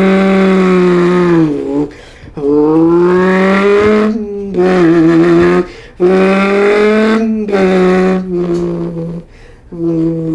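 A man imitating a Honda Civic driving off with his voice: a buzzing engine-like hum held in stretches of one to two seconds, each gliding a little in pitch and broken by short gaps, like an engine working through the gears.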